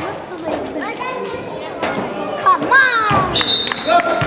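Players shouting and talking in an echoing gymnasium, with scattered knocks of a basketball and shoes on the hardwood floor. A brief shrill high tone sounds near the end.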